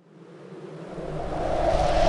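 A swelling rush of noise with a low rumble underneath, rising steadily from silence: a riser effect opening a song's intro.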